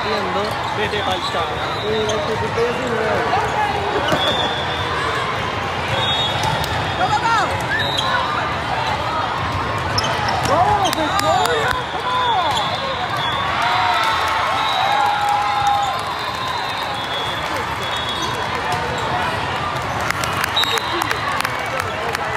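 Busy hall of a multi-court volleyball tournament: overlapping chatter and shouts from players and spectators, volleyballs being struck and bouncing with sharp smacks, and sneakers squeaking on the court floor. Short high-pitched referee whistle blasts from nearby courts sound every few seconds.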